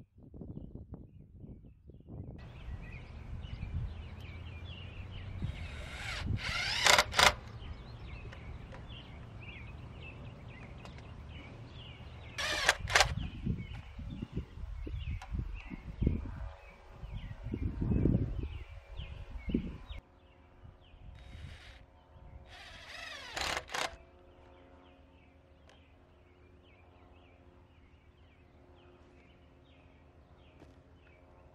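Outdoor ambience with birds chirping over a low rumble, broken by three short, loud whirring bursts of work noise while a chainsaw-mill guide board is set up on a log. The last stretch is quieter, with a faint steady hum.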